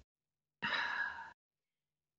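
A woman's short audible sigh, one breathy exhale of under a second, in a pause while she thinks of her answer.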